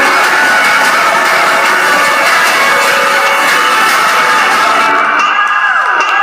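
Live electronic trap music played loud through a concert PA, with a crowd cheering over it. The bass drops out at the start, and about five seconds in, swooping synth tones start diving down and rising back up.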